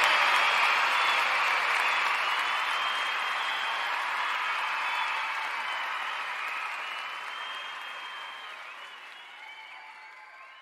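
Crowd applause with a few faint whistles, fading out steadily.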